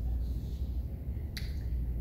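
A single short, sharp click about a second and a half in, over a steady low room hum.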